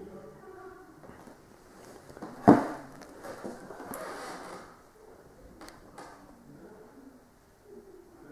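A single loud, sharp thump about two and a half seconds in, followed by a couple of seconds of rustling and two short clicks a little before six seconds.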